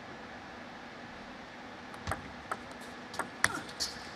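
A plastic table tennis ball clicking off the rackets and the table in a quick rally: about five sharp ticks in the second half, a few tenths of a second apart, after a steady low background hum.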